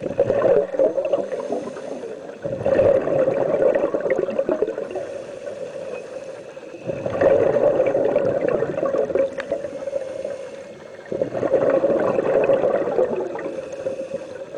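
A scuba diver's exhaled air bubbling out of the regulator underwater, in four bursts a few seconds apart: the rhythm of steady breathing, with quieter stretches between the exhalations.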